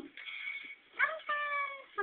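A high, meow-like cry: one drawn-out call of just under a second, starting about halfway through with a quick rise in pitch, then sliding slightly down.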